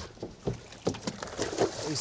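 A bluefin tuna splashing as it is slid over a boat's side back into the sea, with a few sharp knocks as it goes.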